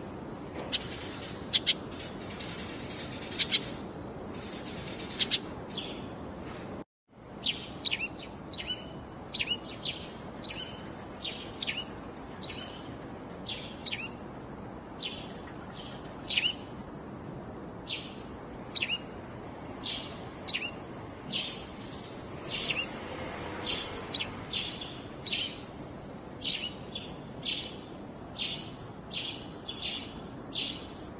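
Steady running noise of a bottle filling line, overlaid by short, high-pitched chirps about one to two a second, many falling in pitch. The sound cuts out for a moment about seven seconds in.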